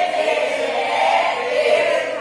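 A large group of adult voices raised together in unison, men and women, sustained and loud, like a group chant or call.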